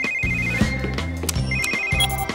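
A cartoon handheld communicator (a pup-pad) ringing with an electronic trilling ringtone for an incoming call: one ring trails off about half a second in and a second begins about a second and a half in, over background music.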